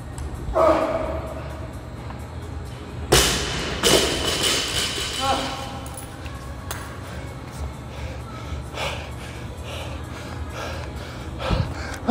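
A loaded 155 lb barbell dropped onto a rubber gym floor about three seconds in, banging twice as it lands and bounces. A man grunts before it and shouts after it, over background music.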